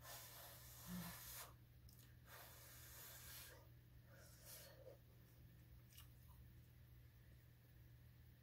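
Near silence: faint breaths and soft mouth noises as a mouthful of corned beef hash is chewed, over a low steady room hum.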